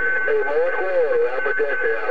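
Garbled, unintelligible voices of distant stations coming through the speaker of a President HR2510 radio tuned to 27.025 MHz, thin in tone, with a steady high whistle running under much of it.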